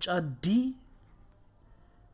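A voice says a short phrase in Amharic, 'choice D', then a quiet pause with only faint stylus scratching on a drawing tablet while the letter D is being written.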